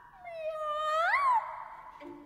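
Operatic soprano voice singing a drawn-out, cat-imitating "miau": a held note that swoops up about a second in and then drops away.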